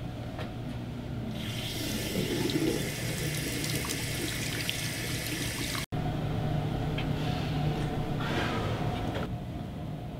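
Bathroom sink faucet turned on and water running into the basin with a steady hiss for about four seconds, cut off suddenly about six seconds in.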